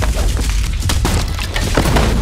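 A loud, deep trailer boom hit that comes in suddenly, followed by dense rumbling noise with a few sharp cracks, about a second in and again near the end.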